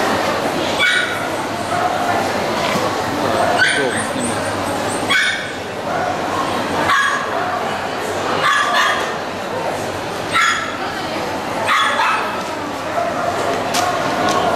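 A small dog barking in short, high yaps, about eight times at a fairly even pace of one every one and a half to two seconds, over the steady chatter of a crowded show hall.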